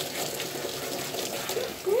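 Water spraying steadily from a handheld spray head onto a wet dog's head and coat, shampoo mixed into the warm water.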